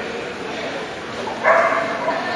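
A dog barks once, loud and short, about three-quarters of the way through, over a steady murmur of voices.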